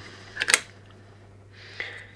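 A sharp double click about half a second in: a small circuit board being picked up off an aluminium mounting plate.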